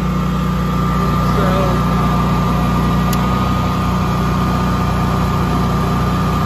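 Generac home standby generator's engine running steadily inside its enclosure: an even low hum with a thin high whine over it.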